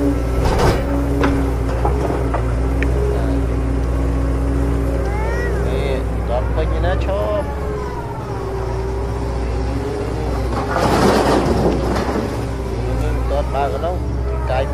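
Voices in the background over a steady low hum, with a louder noisy burst about eleven seconds in.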